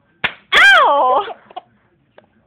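A sharp hand slap, then a loud, high-pitched squealing laugh from a baby: one long call that rises and then falls in pitch.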